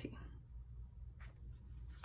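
Faint rustle of paper as a sticker book's page is handled and lifted, with a soft short sound a little past halfway, over a low steady hum.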